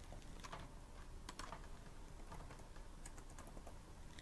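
Faint computer-keyboard typing: scattered, irregular keystrokes as a date is typed in.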